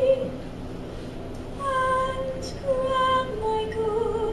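A young woman singing solo without accompaniment into a handheld microphone, holding long notes; one note ends right at the start, then after a pause of about a second she sings the next phrase of sustained notes.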